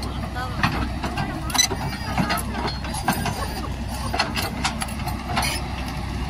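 Crawler excavator (XCMG XE210i) with its diesel engine running steadily, and scattered sharp clanks and knocks across it.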